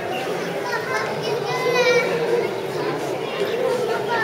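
Indistinct chatter of a crowd of people talking around the camera, with one high-pitched voice, like a child's, calling out about two seconds in.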